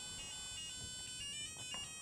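Calliope mini board's small speaker playing a short electronic melody of stepped beeping notes. The pitch changes several times. The melody is its signal that the keycode was accepted and the door is opening.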